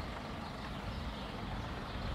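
Outdoor street ambience picked up while walking: a steady low rumble with a hiss above it, with no distinct events.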